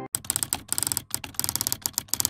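Typing sound effect: a rapid, uneven run of keystroke clicks with a couple of brief pauses.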